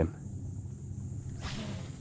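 A cast with a spinning rod and reel: line paying out with a brief soft whoosh about a second and a half in, over a faint steady low hum.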